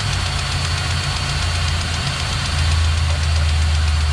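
Cordless grease gun motor running steadily with the trigger held, the gun thought to be out of grease. Under it a truck engine idles with a steady low hum that gets a little louder about halfway through.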